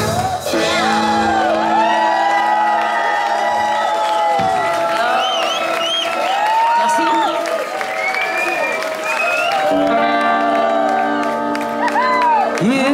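Live garage-rock band playing at full volume, with wordless whoops and shouts gliding up and down over a held chord. The full band texture comes back in near the end.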